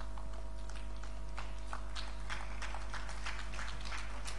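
Room tone in a hall during a pause in amplified speech: a steady electrical hum with faint scattered clicks and taps.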